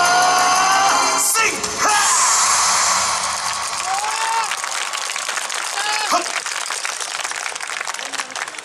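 Recorded yosakoi dance music ends with held final notes and a short closing burst in the first few seconds, then the audience applauds with scattered cheers and shouts.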